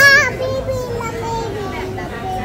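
A young child's short, high-pitched squeal right at the start, followed by softer voice sliding slowly down in pitch, over background chatter.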